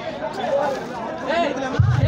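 Several people's voices talking over one another, with a heavy bass beat from a loudspeaker sound system cutting in near the end.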